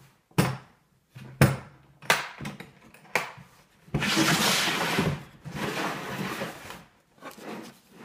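Hard plastic tool carrying case being handled and opened: a few sharp clicks in the first three seconds as its latches are undone, then a longer scraping rustle about four seconds in as the lid swings open, and small knocks near the end.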